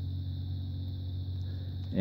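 A steady low machine hum with a faint, thin high whine above it.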